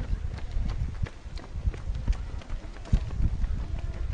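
A runner's footsteps on pavement, even slaps at about three a second, over a low rumble.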